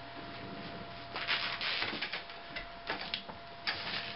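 Loaded Abo Gear Beach Lugger cart being moved and set down on carpet: a short run of scuffing, rubbing noises, then two briefer scuffs near the end.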